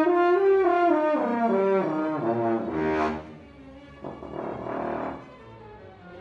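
French horn played as a run of notes stepping up and then back down, its intervals kept in tune by the horn's flared bell. After about three seconds the playing stops and a quieter hiss-like noise follows.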